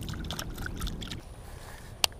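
Light, irregular splashing and trickling of shallow pond water as a small bass is released by hand at the bank, dying away a little over a second in.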